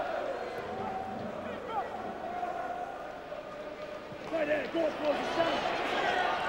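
Football stadium crowd: a steady murmur of many voices with scattered shouts from fans, which grow louder about four seconds in.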